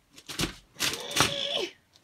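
Clicks and metallic scrapes of a small bench vise being handled, with a Fitbit knocking against its jaws as it is fitted in, in two short bursts about half a second and a second in.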